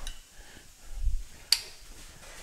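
A single sharp snip of hand cutters biting through a small piece of metal, about one and a half seconds in, with a soft low thump a little before it.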